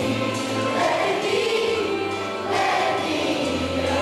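A song sung by a group of voices together, over instrumental backing with held low bass notes.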